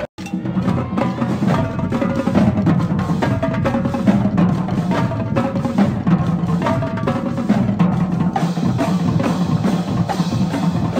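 Marching drumline playing a fast, continuous cadence: rapid snare-drum strokes over bass drums.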